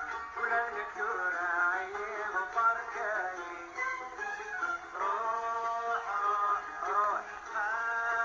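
Old Kabyle popular song from a vinyl record: a melodic line of held, bending notes over instrumental accompaniment.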